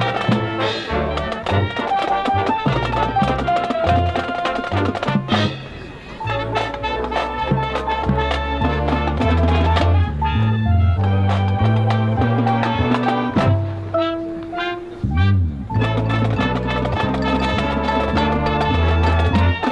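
High school marching band playing its field show: brass melody and bass line over drums and percussion, with a brief lull about six seconds in.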